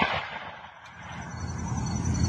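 The dying echo of a black-powder percussion rifle-musket shot, rolling away over about half a second, followed by quiet open-air background.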